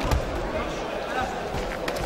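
A sharp thud shortly after the start, then a couple of lighter knocks near the end, from two MMA fighters trading strikes and moving on the ring canvas, over a background of crowd voices.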